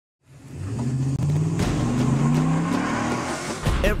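Truck engine revving up, its pitch climbing over a couple of seconds under a growing rush of tyre and road noise. A deep boom comes in near the end.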